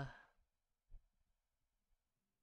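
Near silence: a man's drawn-out "uh" trails off at the very start, followed by one faint short sound about a second in.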